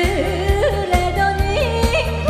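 A woman singing a Korean trot song over instrumental accompaniment with a steady beat, holding long notes that bend and turn in pitch.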